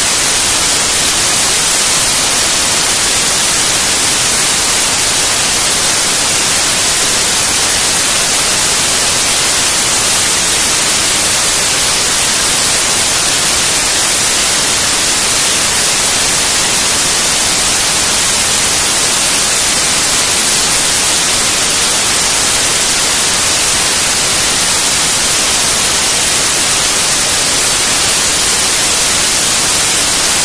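Loud, steady static hiss from a glitch 'raw data' track, raw data played back as audio, with no pitch, beat or change in level.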